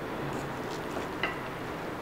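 Quiet handling sounds of a serving spoon lifting biryani rice out of a non-stick pan, with one faint light click a little over a second in, over a steady low background hiss.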